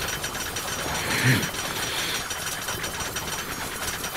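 Fantasy battle sound effect of sword energy: a steady, rapid crackling like sparking lightning, with a brief louder low swell about a second in.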